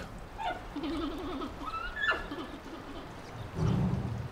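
Giant panda calling in the breeding season: a quavering bleat, then a few short chirps, and a lower, louder bleat near the end.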